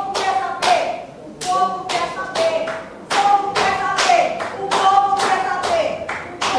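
A run of sharp taps, about two to three a second, with a raised voice over them.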